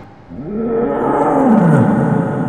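A big cat's roar used as a sound effect: one long roar that starts just after the earlier sound has faded, rises briefly, then slides down in pitch and trails off into an echo.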